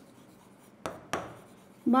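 Marker pen writing on a whiteboard: two short strokes about a second in. A voice starts right at the end.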